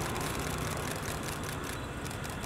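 Vehicle engine idling steadily under outdoor street noise.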